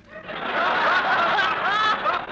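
Studio audience laughing at a punchline, the laughter swelling up over the first half second and then holding steady.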